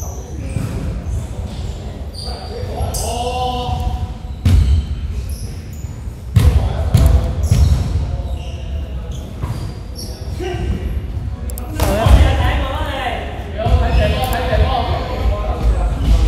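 Basketball bouncing a few separate times on a hardwood gym floor, each bounce echoing in a large hall, with players' voices.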